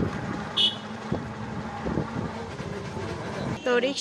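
Street noise from traffic, with a motor vehicle running close by and a few knocks, plus a brief high-pitched beep about half a second in. A voice starts talking near the end.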